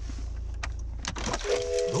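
Low steady hum inside a car cabin that cuts out about a second in, followed by a held musical chord of several steady tones.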